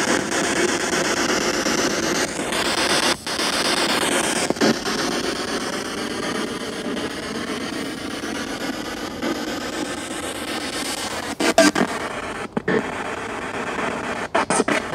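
Spirit box (radio-sweep ghost box) hissing with static as it scans through radio stations, with brief cut-outs about three seconds in and choppier, stuttering bits near the end.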